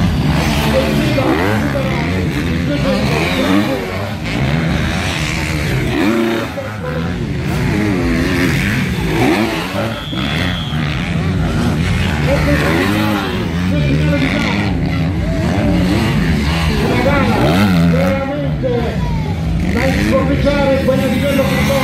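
Several motocross dirt-bike engines revving up and down, one after another, as the bikes pass.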